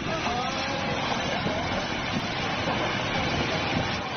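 A multi-storey house collapsing into a landslide: a steady rumble of crumbling masonry and pouring debris and mud. Faint voices can be heard behind it.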